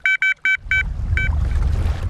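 Electronic carp bite alarm beeping in a quick, uneven run of short high beeps as line is pulled off: a fish taking the bait. A low rumbling noise builds up behind the beeps about halfway through.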